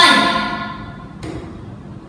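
A computer game's chiming sound effect from the speakers: a sudden ringing chord with a falling low tone under it, fading out over about a second.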